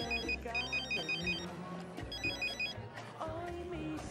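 Mobile phone ringing with an electronic trilling ringtone in two rings: the first stops about a second and a half in, and a shorter second ring follows a little past the halfway point. Background music plays underneath.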